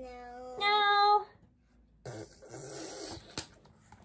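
A woman's voice makes a short two-note sound without words, a low note and then a louder, higher one. After a pause, the rustle of a picture book's paper pages being turned, with a small click near the end.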